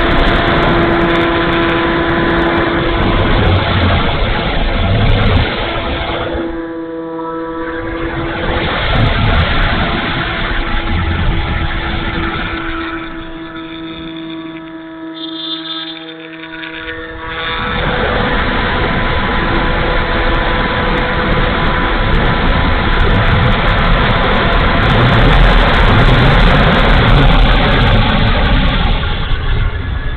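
Wind rushing over the onboard camera of an E-flite Timber RC floatplane in flight, with the steady whine of its electric motor and propeller under it. The rush dies down twice, briefly around seven seconds in and again for a few seconds from about thirteen seconds, leaving the motor whine clear, then builds back up.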